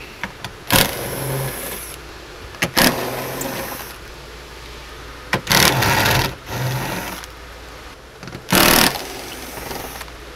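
Cordless electric ratchet running in about four short bursts, spinning out 10 mm bolts from a car's rear hatch.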